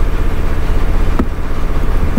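Loud, steady low rumble with a faint hum above it and a single small click a little after a second in.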